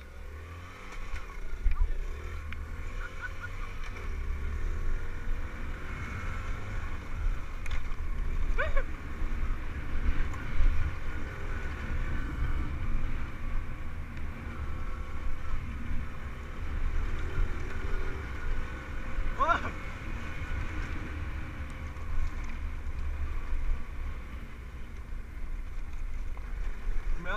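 Small dirt bike engine running steadily as the bike rides a dirt track, heard through strong wind rumble on a helmet-mounted camera's microphone.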